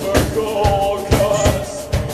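Live rock band playing: drum kit strikes over electric bass and electric guitar.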